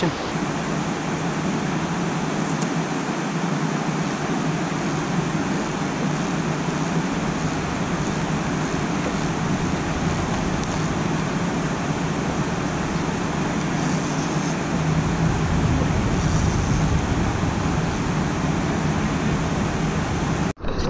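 Steady rushing of river water pouring over a low dam, an even, unbroken wash of noise. A deeper rumble joins about three-quarters of the way through.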